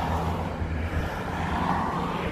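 Cars driving past on an asphalt road close by, a steady tyre and engine noise that swells near the end as another car comes up.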